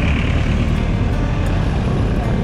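Street traffic: a steady low engine rumble as a passenger jeepney pulls away, with a thin high hiss that fades out over the first second or so.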